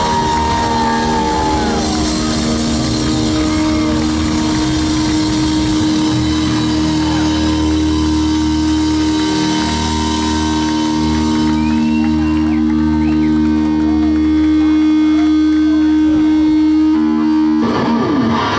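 Live rock band with amplified electric guitars holding a long sustained chord over a wash of drums and cymbals. A new hit and chord come in just before the end.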